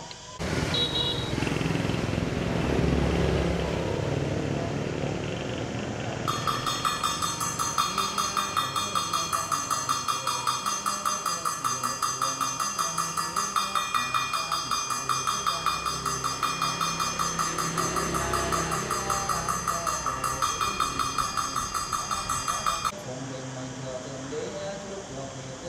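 A small metal ritual hand bell rung in a fast, even rhythm over a man's chanting, beginning about six seconds in and stopping abruptly a second before the end.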